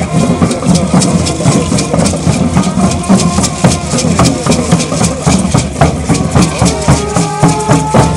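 Parade percussion: maracas shaken in a steady fast rhythm, about four strokes a second, over a drum beat. A held higher note joins near the end.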